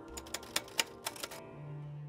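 Typewriter key-click sound effect: a quick run of about a dozen clicks over a second and a half as on-screen text types itself out, then a low steady tone near the end, with background music.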